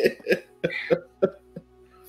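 A person's short vocal bursts, about five of them, dying away over the first second and a half, with a faint steady hum under them.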